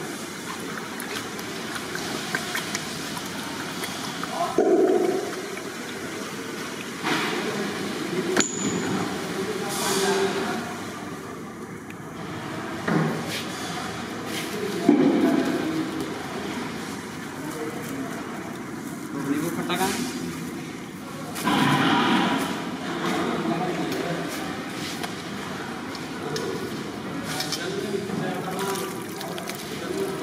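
Indistinct voices of people talking, over a steady background noise.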